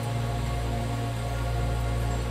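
Calm ambient meditation music: a steady low drone under soft held tones, with a light hiss.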